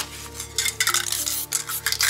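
Background music with a steady melody line, under irregular short rustling and scraping noises from hands working on a spray-painted poster.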